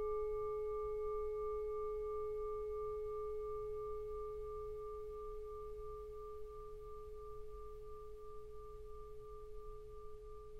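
Singing bowl ringing out at the close of a guided meditation: one steady low tone with a fainter wavering overtone above it, slowly fading away.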